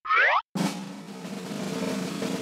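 A short cartoon sound effect sliding down in pitch, then a sustained musical transition: held chords under a wash of noise that slowly grows louder.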